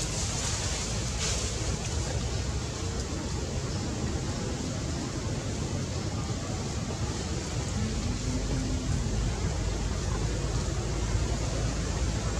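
Steady outdoor background noise: a low rumble and an even hiss with no distinct events.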